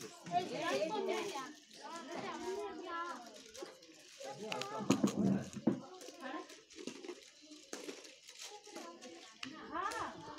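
Children's voices talking and calling out during play, with a few brief sharp clicks among them.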